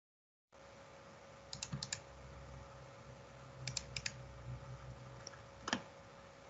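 Faint clicks from a computer mouse and keyboard, in two quick runs of about four clicks each, around a second and a half in and around four seconds in, with one more click near the end, over a low steady hum.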